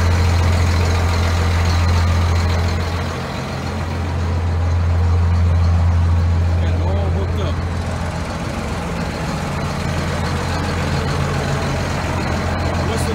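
Cummins 12-valve 5.9 L inline-six diesel of a 1993 Dodge 350 idling through homemade straight exhaust stacks, a deep, even drone.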